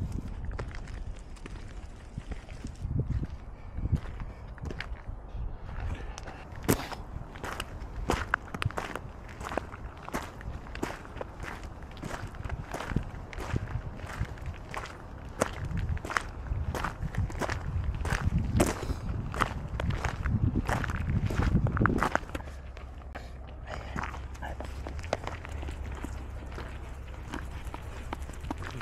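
Footsteps crunching on a gravel path at a steady walking pace, starting several seconds in and stopping a few seconds before the end, over a low rumble.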